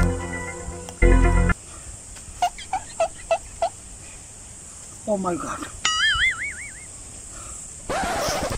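Two short, loud organ-like keyboard chord stabs of background music, the second about a second in. A man's voice follows with a string of five short pitched vocal sounds, a falling spoken word and a drawn-out, wavering vocal note.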